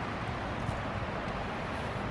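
Steady outdoor background noise, an even hiss with no distinct sounds standing out.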